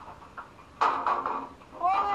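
A young man shouting "Hey!", with a harsh, sudden loud burst about a second in and a long drawn-out shout near the end that falls in pitch.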